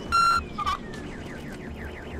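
Police car siren wailing, its pitch falling over the first second and then switching to a rapid warble. A short, loud electronic beep about a tenth of a second in, with a smaller blip just after, is the loudest sound.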